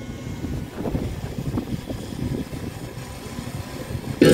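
Wind rumbling and buffeting on the microphone, uneven in strength, during a pause in the music.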